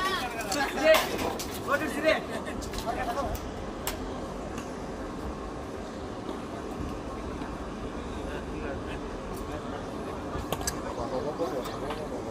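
Men talking indistinctly for the first few seconds, then a steady low hum with a few sharp metallic clicks as snake tongs and a hook probe a pile of scrap metal.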